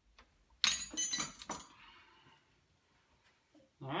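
A quick cluster of hard metal clinks and clatter about half a second in, lasting about a second, as the convertible top's hydraulic lift cylinder is handled in a drip pan to press the fluid out.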